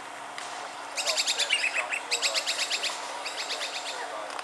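A bird calling in three bursts of rapid repeated notes, the first starting about a second in.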